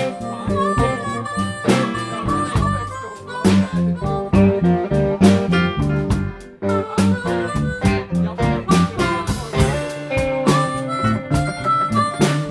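Live blues band playing, led by a harmonica solo played cupped against a vocal microphone, with electric guitars, bass and drums behind it.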